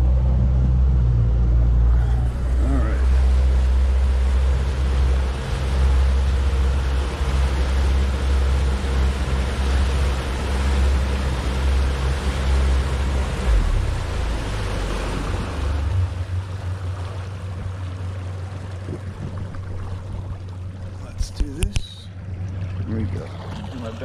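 Mercury Pro XS 115 four-stroke outboard running at speed, with hull and water rushing. About two-thirds of the way through the engine slows to a lower, quieter drone as the boat comes off plane, and a few sharp clicks come near the end.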